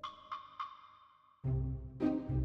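A bright pinging tone struck three times in quick succession, about a third of a second apart, each ringing and fading. Background music with a heavy low beat starts about one and a half seconds in.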